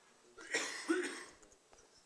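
A person coughs once, about half a second in: a short, breathy burst that dies away within a second.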